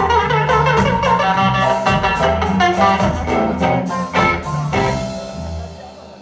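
Live ska band playing: electric guitar, saxophones, upright bass and drums over a walking bass line. They end the song on a final held chord that dies away near the end.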